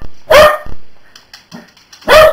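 Small shaggy dog barking once, loud and sharp, about half a second in, followed by a few faint taps.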